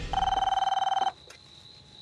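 A telephone ringing: one warbling ring about a second long that stops suddenly.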